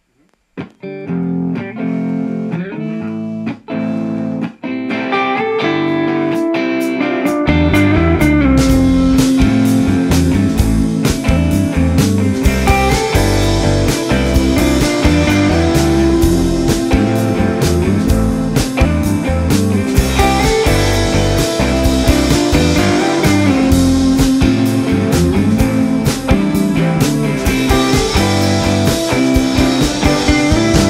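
Live indie rock band playing the instrumental intro of a song: guitar opens without drums, then the drum kit comes in about seven seconds in, and the full band with drums, guitar and keyboard plays on at a steady beat.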